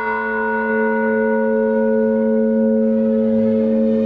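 Russian Orthodox church bells in a belfry, rung by ropes, their tones ringing on after a strike just before this moment. Several steady tones hang on without a fresh strike.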